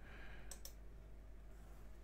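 Two faint clicks of a key or button being pressed, close together about half a second in, over quiet room tone.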